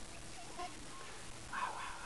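A dog whining: a high, wavering whine that starts about one and a half seconds in and keeps going.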